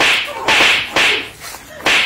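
Flogging: four sharp lashes striking a person, about half a second apart.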